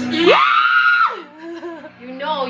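A woman's high-pitched excited scream: it rises sharply, holds for under a second, then drops away.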